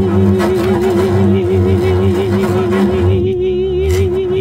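Double bass bowed in free improvisation: low sustained notes under a long held tone with an even vibrato. The scratchier upper part of the sound falls away about three seconds in, while the held tone carries on.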